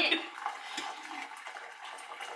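Water pouring steadily from a kettle into a cooking pot, with a few light clinks.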